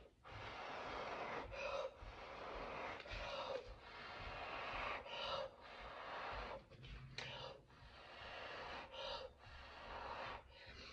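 A person blowing hard through pursed lips onto wet acrylic pouring paint, pushing it outward into a bloom. About six long rushing breaths follow one another, each ended by a quick gasping inhale.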